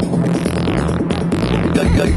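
Psytrance music from a DJ mix: a fast, rolling synth bassline under repeated sweeping synth glides that rise and fall.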